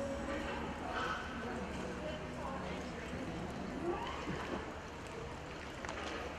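Cutting-horse arena ambience: a horse's hooves working in deep dirt footing among cattle, under indistinct background voices and a steady low hum.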